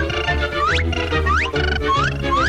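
Orchestral cartoon score with a pulsing bass, cut across by a short rising whistle-like glide about three times, roughly every two-thirds of a second.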